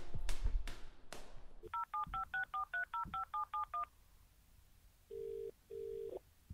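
A few heavy knocks in the first second or so. Then a touch-tone telephone is dialed: about eleven quick two-tone keypad beeps. Near the end comes the ringing tone of the called line, two short bursts close together.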